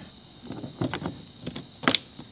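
Short plastic clicks and knocks as an aftermarket rear bumper reflector light is pressed and clipped into a Tesla Model Y's rear bumper. There are several light taps, then a sharper snap near the end.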